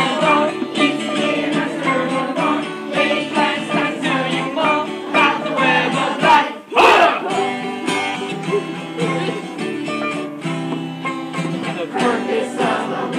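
A group of voices sings a catchy song to a strummed acoustic guitar and a hand drum. A loud whooping shout, "Hoo!", falls in pitch just before the middle.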